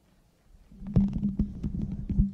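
Handling noise from a handheld microphone being taken off its stand: low rumbling and rubbing with several sharp thumps, over a steady low hum that comes in about a second in.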